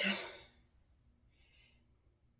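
A woman's sigh: a breathy exhale trailing off over about half a second, followed by a faint short breath.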